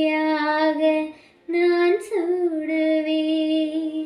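A young woman singing solo, holding long steady notes. She breaks off for a breath about a second in, then comes back with a note that bends down in pitch before settling and holding to the end.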